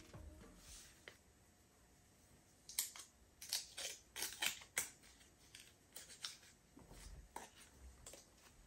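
Watch packaging being unwrapped by hand: a run of short, crisp paper-and-plastic rustles and clicks starting about three seconds in, with a few scattered ones near the end.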